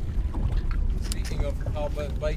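Wind buffeting the microphone on an open boat, a steady low rumble, with a short exclamation of "Oh" near the end.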